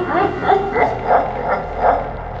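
A man sobbing: short, pitched catches of the voice about three times a second.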